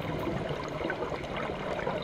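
Scuba diver's exhaled bubbles streaming up from the regulator underwater, a steady bubbling noise picked up by a GoPro in its underwater housing.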